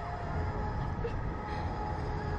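Wind rushing over the onboard camera's microphone as the Slingshot reverse-bungee capsule swings in the air: a steady low rush with no pauses.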